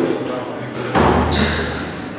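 Squash rally on a court: ball and racket hits, with a loud thump about a second in that rings on briefly in the court, followed by a short high squeak.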